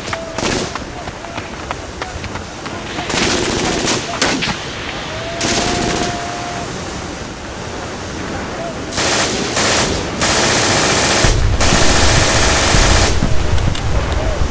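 Battle ambience built from recordings of real World War II guns: scattered shots and short machine-gun bursts, then a long, dense machine-gun burst over a deep rumble near the end.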